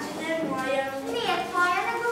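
Speech only: a child speaking, reciting lines.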